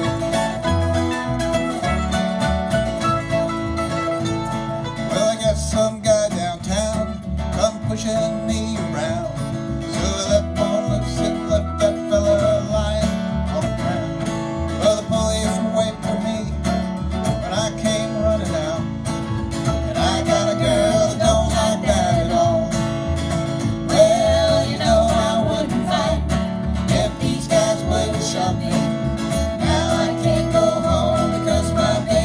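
Acoustic string band playing live, with upright bass, acoustic guitar, mandolin and lap steel guitar. The bass keeps a steady pulse under a wavering melody line.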